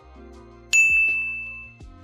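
A single bright ding, a chime sound effect for an animated transition graphic, struck about two-thirds of a second in and ringing out for about a second, over soft background music.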